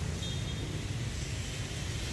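A steady low background rumble with no distinct events, the kind heard while walking a handheld microphone through a large room.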